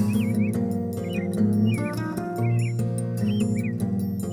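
Calm background music of held, sustained notes, with short bird chirps mixed in, about every half second.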